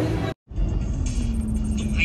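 A brief dropout near the start, then a moving car heard from inside: steady engine and road rumble with music playing over it.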